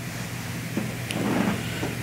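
Room tone in a small meeting room: a steady low hum, with faint indistinct sounds around the middle.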